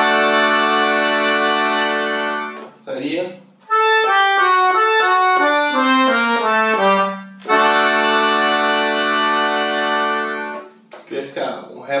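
Piano accordion playing a long held chord, then a falling run of single notes from about four seconds in, landing on another long held chord. This is the altered closing phrase of the tune's second part.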